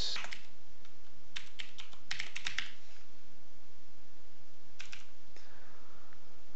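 Computer keyboard being typed on in short bunches of keystrokes with pauses between them. The busiest run comes about two seconds in, and a shorter one near the end.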